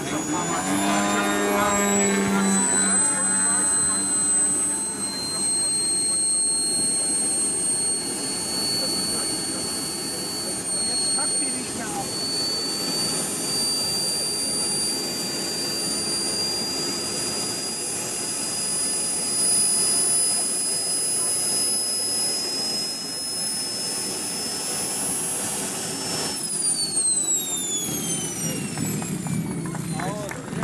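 Radio-controlled model aircraft engines. The Extra 330SC's propeller drone wavers overhead for the first few seconds. A high, steady engine whine then runs on, creeping slowly up in pitch, and about 26 seconds in it glides steeply down as the engine winds down.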